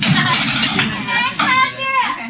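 Excited young voices calling out and whooping in a small room, with a few sharp clicks in the first moments.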